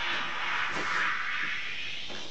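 A steady hiss of noise that fades away near the end.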